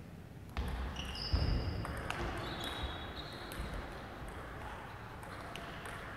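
Table tennis rally: the ball clicking off rackets and table several times, irregularly spaced, with a few short high squeaks, likely shoes on the sports-hall floor, in an echoing hall.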